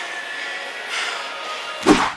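Steady gym room noise with faint background music, then one loud thump near the end.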